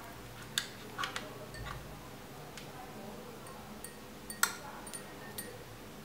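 Light clicks and clinks of metal thermostat sensor probes knocking against a drinking glass as they are lowered into hot water. About half a dozen short taps, the sharpest about four and a half seconds in.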